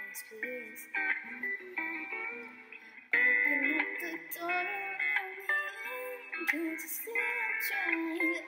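A woman singing a slow original song into a handheld microphone, with musical accompaniment, her voice moving in held, bending notes.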